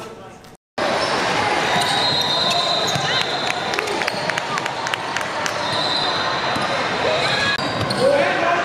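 Basketball game sound in a gym: a ball bouncing on the court with many sharp knocks, over a steady bed of voices and chatter. A high steady tone sounds twice, and the audio drops out briefly just after the start.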